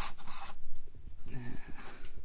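Plastic battery-pack housing sections rubbing and scraping against each other as they are pushed together by hand, in short rustling scrapes.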